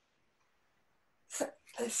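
Near silence, then a woman's voice starts speaking about one and a half seconds in.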